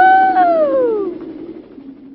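A voice calling a long "woohoo" that glides up, holds, then falls away and ends about a second in, over a steady low hum that fades out.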